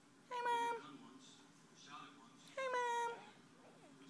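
A high-pitched voice giving two drawn-out, level-pitched calls, each about half a second long and about two seconds apart.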